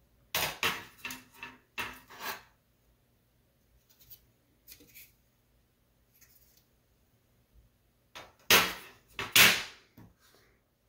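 Hard plastic laptop parts knocking and clattering: a quick run of sharp knocks in the first two and a half seconds, a few faint ticks midway, then two louder knocks near the end, as the just-removed base cover of a Lenovo ThinkPad T450s is set aside and the laptop is handled.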